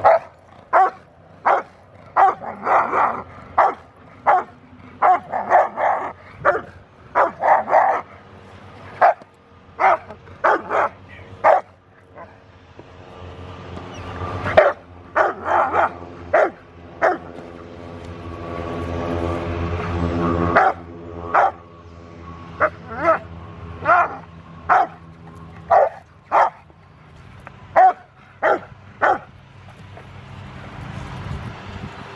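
Rottweiler barking repeatedly at a protection-training helper: short full barks in runs of about one or two a second, with brief pauses between runs. Midway a steady low drone builds up beneath the barking and cuts off suddenly about two-thirds of the way through.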